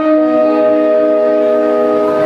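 Electronic keyboard holding one long, steady chord, with no drum strokes.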